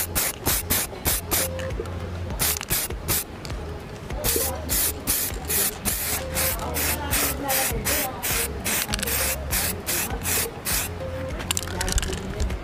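Aerosol can of Samurai metallic black spray paint hissing in short quick bursts, several a second, with a few longer passes, as a coat is laid onto a plastic motorcycle fairing.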